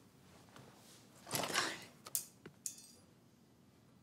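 A picture frame being lifted off a wooden shelf: a brief rustle of movement about a second in, then a knock and a short light metallic clink.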